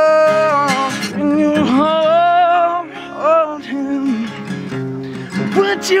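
A man singing long, sliding notes over a strummed acoustic guitar, live and unaccompanied otherwise.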